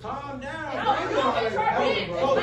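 Several people talking loudly over one another: overlapping, unintelligible chatter of a heated exchange in a crowded room.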